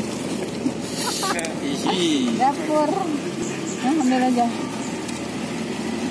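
Indistinct people's voices talking over a steady low hum, with a short rustle about a second in.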